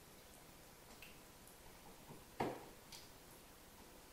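Faint handling clicks and one sharper knock about two and a half seconds in, from a duplex wall outlet being seated in its electrical box and fastened with a screwdriver.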